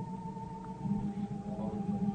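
Quiet sustained chord of held musical tones, with a slight waver in pitch, on an old sermon recording.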